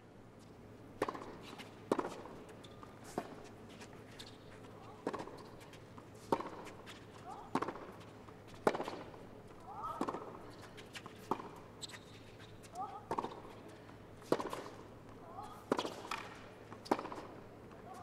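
Long tennis rally on a hard court: racquets striking the ball, with about fifteen sharp pops roughly one a second.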